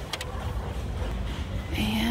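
A couple of light clicks from glass nail polish bottles being handled in a plastic display tray, over a low steady background hum. A woman's voice starts near the end.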